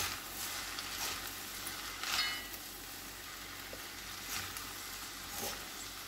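Vegetable noodles being stirred and tossed in a hot metal kadai, with a steady low sizzle and a few louder strokes of the utensil against the pan.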